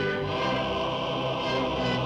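A choir singing long held chords: soundtrack music, the notes shifting to a new chord about once a second.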